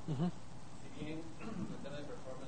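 Indistinct speech from an audience member asking a question away from the microphone, quieter than the presenter's amplified voice.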